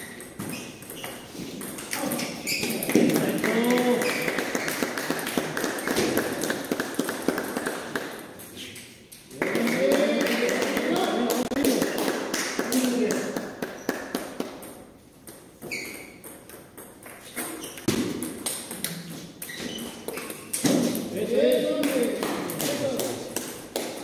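Table tennis balls clicking off paddles and tables in quick rallies across several tables. People are talking in the background, at times louder than the ball strikes.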